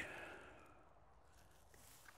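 Near silence: quiet background with a faint hiss that fades out in the first half second.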